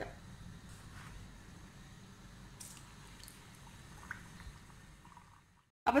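Oil heating in a pan, a faint low sizzle with a few soft, scattered pops. The sound stops abruptly near the end.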